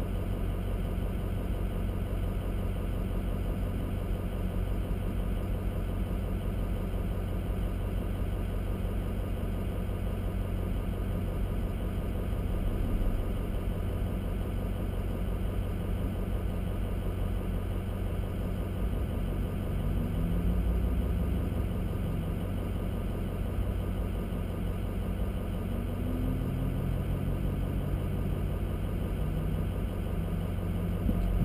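Vehicle engine idling steadily while stopped, a low rumble heard from inside the cab.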